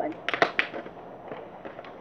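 Handling noise: a quick cluster of sharp clicks and crackles about half a second in, then a few lighter ticks, as small objects are handled close to the microphone.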